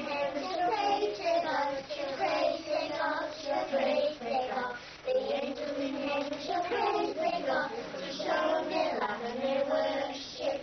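Young children singing a song together.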